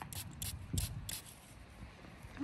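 Faint rubbing and scraping of fingers handling a small, soil-crusted lead toy figure, with a few short scuffs in the first second or so.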